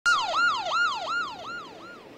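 A siren in a fast falling yelp: each sweep drops sharply in pitch, then jumps back up, nearly three times a second, fading away over the two seconds.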